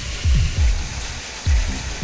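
Background music with a steady beat over a continuous rushing hiss of gravel pouring out of a tipper trailer's raised body.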